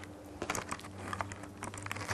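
A run of faint, irregular light clicks and taps over a steady low hum.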